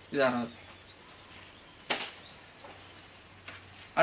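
A brief spoken syllable, then quiet room tone broken by one sharp click about two seconds in, with two faint short high chirps.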